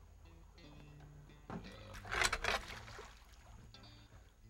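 Faint background music with a few soft held notes, and a brief rushing splash in water about two seconds in.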